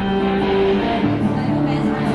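Acoustic guitar playing sustained chords that change about once a second.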